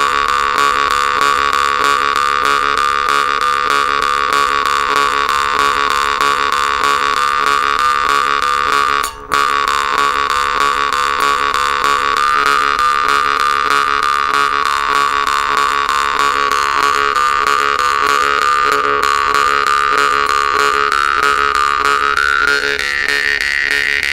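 Temir-khomus (Yakut jaw harp) made by Volgutov, the "Vedun", played with fast, even plucking: a steady drone with overtones shifting above it. The playing breaks off for an instant about nine seconds in.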